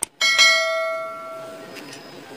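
A bell chime sound effect, struck once and ringing out with several clear tones that fade away over about a second and a half.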